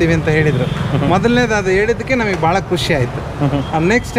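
Men talking in conversation over a steady low hum.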